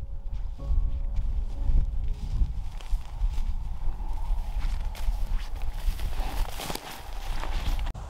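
Footsteps of a person walking through heather and rough grass, with irregular brushing and stepping sounds and a steady low rumble of wind on the microphone. The last notes of piano music fade out in the first couple of seconds.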